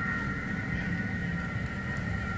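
Zoo sky-ride chairlift running: a steady two-note high whine from the lift machinery over a low, even rumble.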